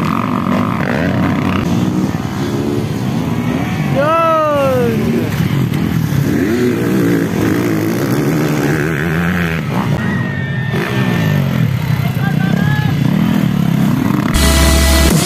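Several motocross dirt bike engines revving hard as the bikes race past, their engine notes shifting up and down with the throttle; about four seconds in, one bike's note sweeps sharply up and then down.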